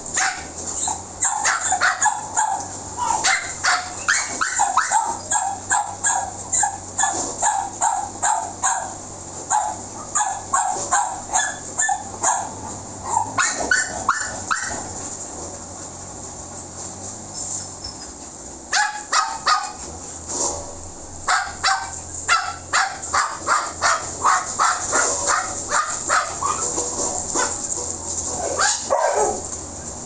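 Dog barking rapidly and over and over, short high barks and yips coming two or three a second, easing off for a few seconds about halfway through before starting up again.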